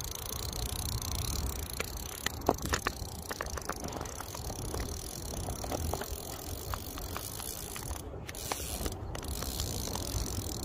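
Spinning reel's drag clicking in irregular spurts as a gar pulls line off it, the sign of a fish running with the bait, over a steady low rumble.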